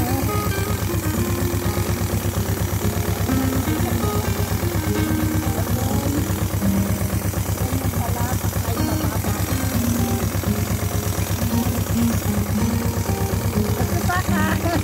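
A tractor engine running steadily at idle with a fast, even low putter, under background music.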